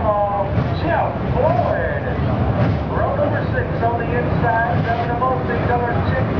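Dirt late model race cars' V8 engines running together in a dense, steady low rumble as the field rolls around the track, with voices over it.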